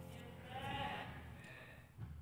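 A short, high, wavering voice-like sound, which could be a child's voice, rising and falling about half a second in, with a fainter one just after, as the sung music fades out.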